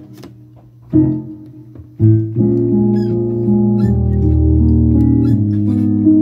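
Piano playing slow held chords: a brief lull at the start, a single chord struck about a second in, then a chord at about two seconds that leads into steady sustained chords.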